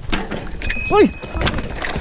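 An electric mountain bike going down with its rider on a rocky climb: clatter and knocks as it falls, with a steady high squeal from the bike lasting under a second.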